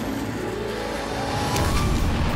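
Cartoon sound effect of a robot vehicle's jet thrusters and engine, a steady rush that swells toward the end with a faint rising whine.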